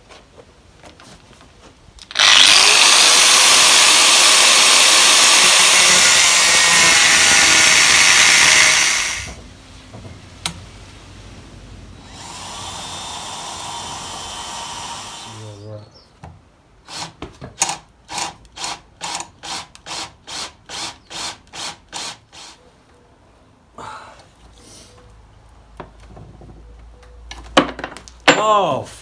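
DeWalt 18V XR cordless drill drilling into a seized stud in a cast-iron exhaust manifold: it spins up and runs loud and steady for about seven seconds, then makes a shorter, quieter run. A series of about a dozen sharp taps follows, roughly two a second.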